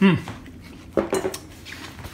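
A metal fork clinking against a glass salad bowl: a quick cluster of three or four clicks about a second in.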